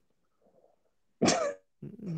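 A person coughs once, sharply, a little over a second in; the rest is quiet.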